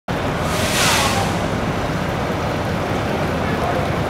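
Steady rushing noise of a rainy, wet street, with a brief hissing whoosh about a second in.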